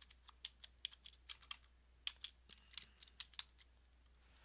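Faint, irregular keystrokes on a computer keyboard as a short phrase is typed, stopping about three seconds in.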